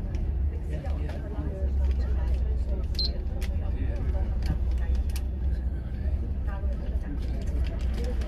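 Volvo B11RT coach's engine, an 11-litre six-cylinder, giving a steady low drone inside the cabin as the coach moves off slowly, with scattered clicks and rattles from the interior. A short high beep sounds about three seconds in.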